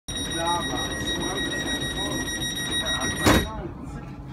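Door-closing warning tone of a Coradia Continental electric train: a steady high beep sounds as the sliding passenger doors close, then a loud thud about three and a quarter seconds in as the doors shut, after which the tone stops.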